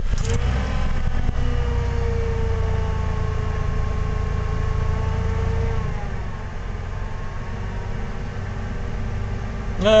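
Ford 4.9 L (300 cu in) inline-six idling steadily just after a cold start, heard from inside the cab, with a high steady whine over the engine that fades and the sound easing a little about six seconds in. The owner says the idle speed control still sticks a little.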